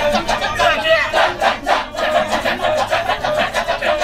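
Kecak chorus: a large circle of men chanting the fast, interlocking "cak-cak-cak" rhythm in a steady pulse, with a held sung line above it.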